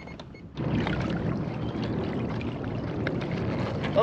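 Water washing and splashing against a fishing kayak's hull, a steady rushing noise that starts suddenly about half a second in.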